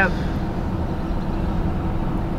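Steady road and engine noise inside the cab of a Chevrolet 2500HD pickup driving along while towing a travel trailer: an even low rumble with road hiss and no distinct events.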